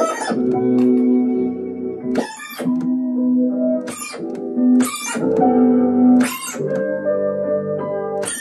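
Chopped cassette-tape samples played back from a Roland SP-404A sampler. Held, pitched chords are cut off and retriggered every one to two seconds, each new chop opening with a short hiss-like hit.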